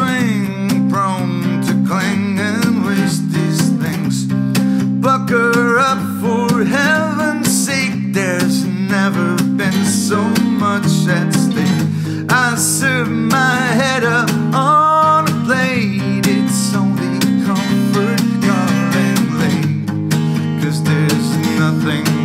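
Acoustic guitar strummed in steady chords, with a man singing over it.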